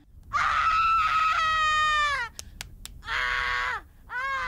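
A person screaming: two long held screams, the first about two seconds long, the second shorter, each dropping in pitch as it ends, with a few sharp clicks in the gap between them.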